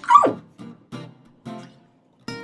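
Background guitar music with plucked notes about every half second, and right at the start a short, loud yelp from a woman's voice that falls sharply in pitch.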